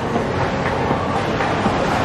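Bowling-alley rumble: a bowling ball rolling down a wooden lane, a steady rumble.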